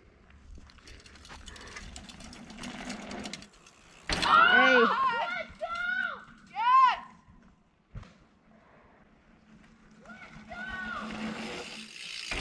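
Shouted calls between riders: several loud rising-and-falling yells about four to seven seconds in, with fainter calls near the end, over faint rustling noise and a single sharp click just before the eight-second mark.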